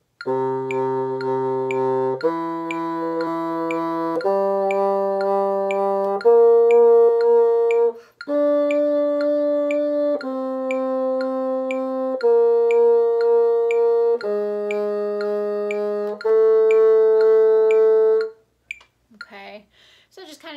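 Bassoon playing a slow line of nine sustained half notes, about two seconds each: C, E natural, G, flicked B-flat, high D, C, B-flat, G-sharp and flicked A, rising to the high D and falling back. Faint steady metronome clicks keep the pulse underneath.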